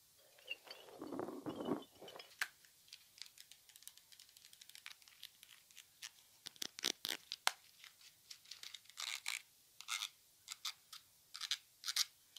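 A soft rubber spiky puffer-ball toy being squeezed and rubbed close to the microphone for about two seconds. Then a long run of short, sharp plastic clicks, taps and scratches from handling a small plastic bubble-solution bottle and its wand.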